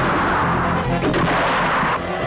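Film soundtrack: background score under loud gunfire sound effects, with a few sudden hits standing out over a dense, continuous din.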